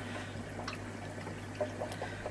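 Faint trickle of aquarium water over a steady low hum, with a few small ticks.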